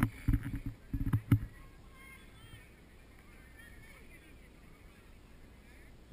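Loud low thumps and rumbling on the camera microphone through the first second and a half, with a couple of sharp clicks, then faint distant calls over a quiet outdoor background.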